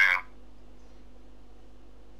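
The tail of a spoken word, then a steady low hum of room tone with no other sound.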